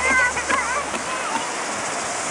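A small child's high voice, strongest in the first half, over a steady rush of surf on the beach.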